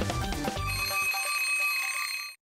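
Television theme jingle: its beat and bass drop out about half a second in, leaving a sustained, bright bell-like ringing chord that holds to the end.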